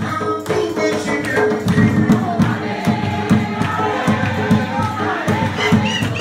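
Congregation singing a hymn together, led by a man's voice on a microphone, with steady rhythmic hand-clapping keeping the beat.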